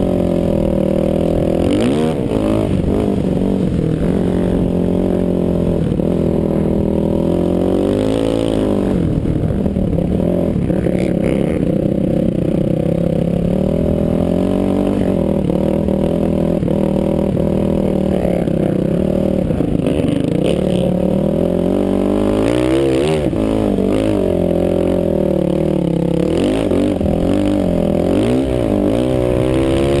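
ATV engine running under load, its pitch rising and falling with the throttle again and again, with the quickest swings near the end.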